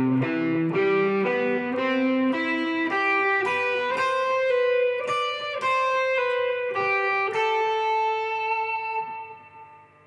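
Stratocaster-style electric guitar picking an arpeggio over a C chord, one note after another about two to three a second, then a held note that rings on and fades out near the end.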